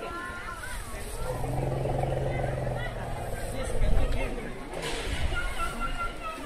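People talking in the background, with a steady low hum for about a second and a half near the start and a low thump about four seconds in.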